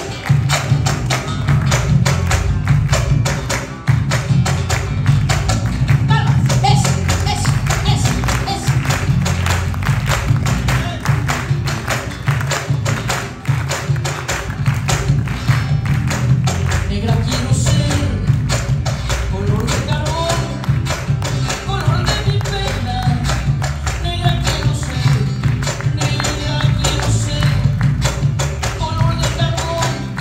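Live marinera limeña played by a criollo band: acoustic guitars and electric bass over a steady driving percussion beat. A woman's singing voice comes in over the band in the second half.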